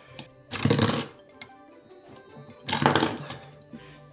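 Two short clattering rattles of LEGO plastic, about a second in and again near three seconds: the two detachable sleds being released by the actuators under the front of the vehicle and knocking against the model and the wooden table. Soft background music underneath.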